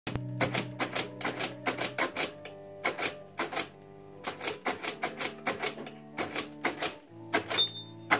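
Keys of a Perkins braille writer being struck one after another, about two to three clacking strokes a second with a short pause midway, as letters are embossed. Steady sustained musical tones sound underneath.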